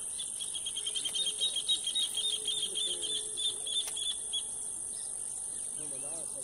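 A bird calling in a quick series of short chirping notes, about seven a second, louder in the middle and fading out about two-thirds of the way through. Under it runs a steady high-pitched insect drone.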